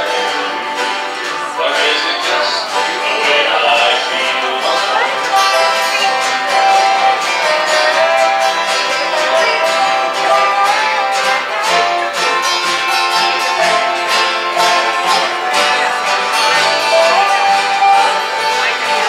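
Live acoustic string-band music in a bluegrass/country style: plucked strings, including a mandolin, under a melody line that slides between notes.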